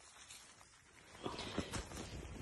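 A few faint footsteps crunching in snow, starting a little over a second in after a near-quiet moment.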